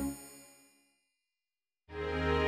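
A bell-like ringing hit with many overtones fades out within about a second, then dead silence, then music comes back in near the end.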